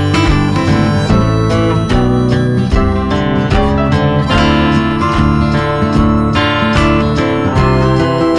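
Background music led by strummed acoustic guitar, with the chords changing every second or so.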